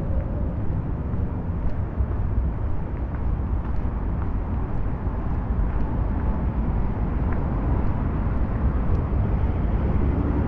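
Steady low rumble of outdoor city-street ambience, with a few faint clicks over it.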